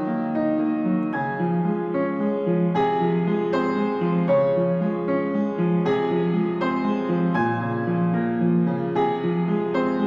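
Piano playing an instrumental passage without singing, with notes and chords struck at a steady, unhurried pace, about one every three-quarters of a second, each left to ring on.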